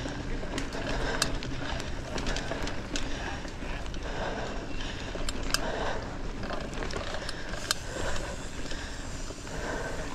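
Mountain bike riding over a dirt trail: steady tyre and wind noise with a low rumble, the bike rattling over the rough ground and a few sharp clicks.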